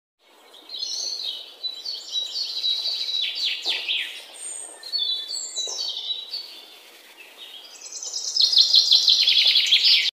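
A songbird singing: high warbling phrases with short pauses, then a loud, fast run of repeated notes in the last two seconds.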